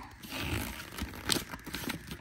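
Paper instruction leaflet rustling and crinkling as it is unfolded and handled, with a sharper crackle a little past the middle.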